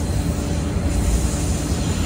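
Low, steady rumble inside the passenger cabin of an old JNR-type diesel railcar, with a faint steady hum above it.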